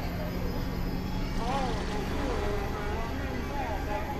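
Experimental electronic drone music: a dense, steady noisy drone with pitched tones that warble and glide up and down over it, like a heavily processed voice, from a little over a second in.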